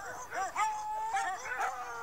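A pack of hounds baying and howling, several calls overlapping and rising and falling in pitch, one held a little longer in the middle.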